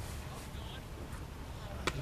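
Faint, steady outdoor background noise at a baseball field, with one sharp crack near the end.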